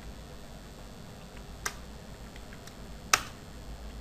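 Computer keyboard being typed on: faint key taps and two sharp key strikes about a second and a half apart, the second louder. The two strikes are the Enter key running two commands.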